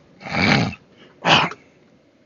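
A man coughing twice, about a second apart: a longer rough cough followed by a shorter one, as loud as his speech.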